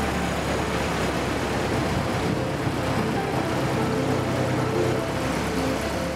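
Steady engine drone: a low hum under an even rushing noise, with faint music underneath. The noise fades out just after the end.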